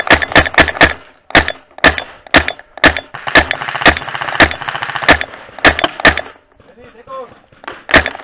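Paintball markers firing: a rapid, irregular run of sharp shots, about two a second, that stops about six seconds in.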